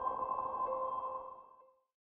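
Closing electronic tone of an outro jingle: a held, chime-like note with ringing overtones that fades out to silence about one and a half seconds in.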